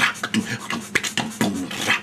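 Old-school vocal beatbox: a man's mouth imitating a drum kit in a fast beat, with quick low kick-like thumps and hissy cymbal-like strokes.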